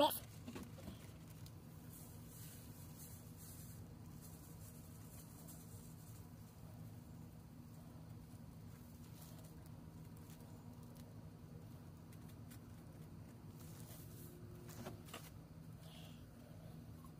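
Faint rustling of a plastic zip bag as ground coffee is shaken into a paper pour-over filter bag, with a few soft crinkles and taps, over a steady low hum.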